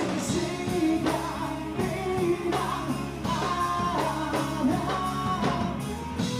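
Live rock band playing, with electric guitars under a male lead vocal singing.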